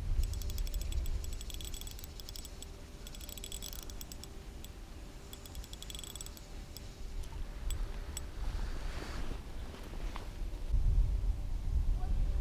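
Spinning reel being cranked on a lure retrieve: runs of rapid fine clicking over the first six seconds, over a low wind rumble on the microphone. A soft rushing sound follows about nine seconds in.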